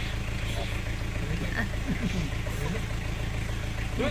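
Car engine idling steadily, heard from inside the cabin, with faint voices about halfway through.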